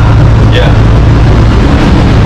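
Steady, loud low hum with a constant pitched drone inside a light-rail passenger car standing at a platform.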